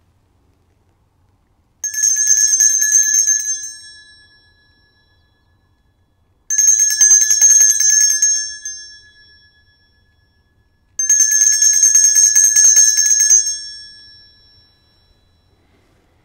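Altar bells rung in three bursts of rapid shaking, each ringing for about two seconds and then dying away, about two, six and a half and eleven seconds in. They mark the elevation of the consecrated host at Mass.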